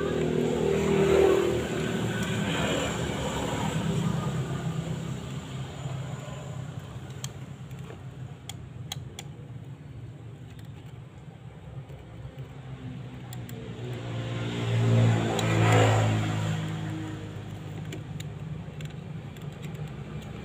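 Transformer-type soldering gun humming steadily at mains pitch while it heats the pins of an IC to desolder it from a circuit board. A louder rumble swells and fades near the start and again about fifteen seconds in, and there are a few faint clicks.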